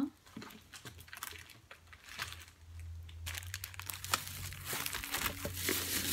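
Plastic shopping bag crinkling and rustling in irregular crackles while items are rummaged through, over a low steady hum that grows stronger about two seconds in.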